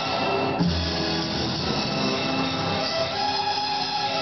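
Music led by guitar, with held chords changing every half second or so and a low bass note coming in about half a second in.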